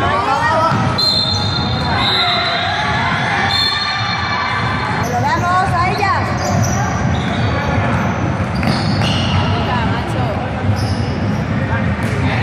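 Sounds of an indoor basketball game in an echoing sports hall: a basketball bouncing on the court amid players' and spectators' voices calling out.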